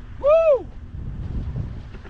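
Wind buffeting the microphone, a steady low rumble, with one short voiced exclamation from a man about half a second in, its pitch rising and then falling.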